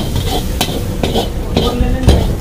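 Steel ladle scraping and knocking against a wok as hakka noodles are stir-fried over a sizzle, with several sharp clanks about half a second apart.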